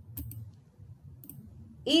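Two computer mouse clicks about a second apart, each a quick double tick of button press and release, as a slide is advanced.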